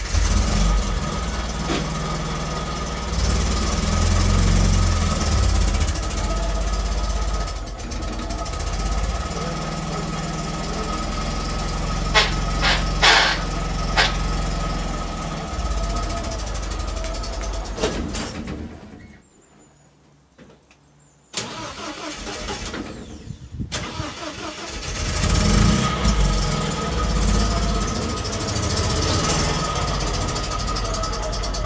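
MGB GT's four-cylinder engine running as the car is driven forward and back, its clutch just freed but gear selection still difficult. A few sharp clicks sound just past the middle, and the engine sound drops away for about two seconds before coming back suddenly.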